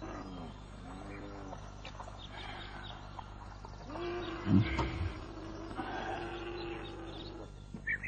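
An animal calling: a few short cries that rise and fall, then one long steady cry about four seconds in, held for about three seconds, with a low thump near its start.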